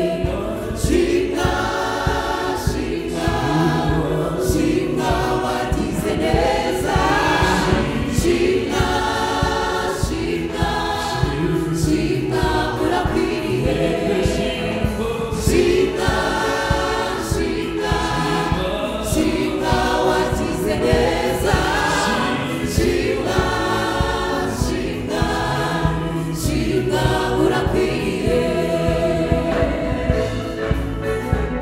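A gospel choir of mostly women singing together into microphones, with a steady beat under the voices.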